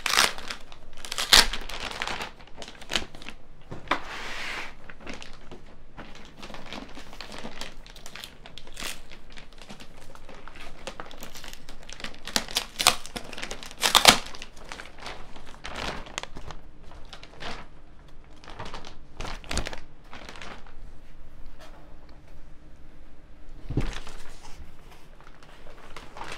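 A large clear plastic bag crinkling and rustling as it is worked off a boxed desktop 3D printer, in irregular crackles throughout, loudest about a second in and again around fourteen seconds.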